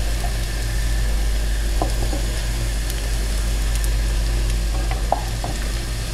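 Apple fritters sizzling steadily as they fry in hot vegetable oil in a pan, with a few faint taps of a wooden spatula and fork as they are turned. A steady low hum runs underneath.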